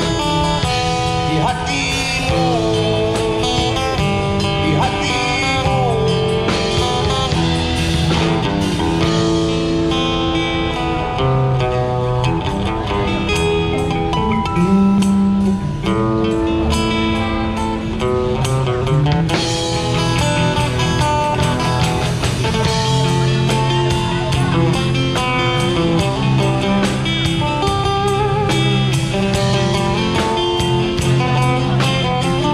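Live street band playing a Malay rock ballad on drum kit, bass guitar and guitars through small amplifiers, with a bending lead melody line over a steady beat.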